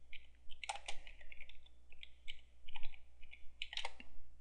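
Computer keyboard being typed on: a quick, irregular run of keystroke clicks as a search term is entered.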